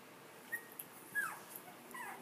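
Spinone Italiano puppies about two weeks old whimpering faintly: a short high squeak about half a second in, then a longer squeal that falls in pitch just after a second, and another squeak near the end.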